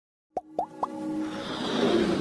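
Logo-intro sound effects: three quick plops about a quarter second apart, each rising in pitch, followed by a swell of electronic music that builds in loudness.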